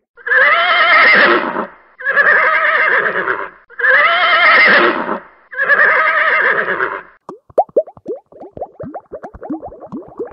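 A horse whinnying four times in a row, each call about a second and a half long with a wavering pitch. Then, for the last few seconds, a rapid run of short falling plops, like bubbling water.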